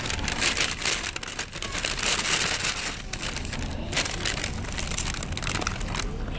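Paper packaging being crinkled and rustled by hand: a dense, uneven crackle of many small clicks.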